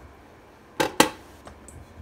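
Two quick, sharp knocks about a second in, the second louder, as whole peeled potatoes are set down on a metal trivet inside a pressure cooker's pot.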